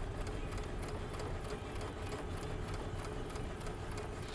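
Electric sewing machines stitching: a rapid, even run of needle strokes over a steady motor hum.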